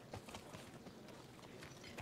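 Horse hooves clip-clopping faintly, a few soft, uneven knocks.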